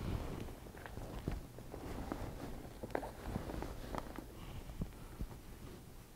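Faint rustling of denim with scattered light taps and ticks as hands smooth a jacket and press its patches flat on a heat press platen.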